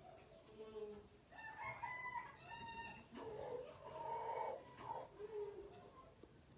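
Faint, long pitched animal calls in the background: one starts about a second in, and a second follows about three seconds in.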